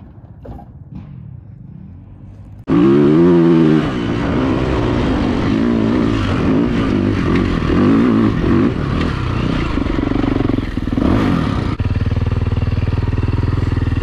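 A vehicle engine revving hard under off-road driving. It cuts in suddenly about three seconds in, and its pitch climbs and drops again and again as the throttle is worked, with a short break near the end.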